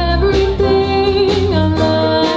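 Live jazz-funk band: a female vocalist sings over bass, drums and keyboard, holding one long note for about a second before moving to a new one, with cymbal strokes keeping time.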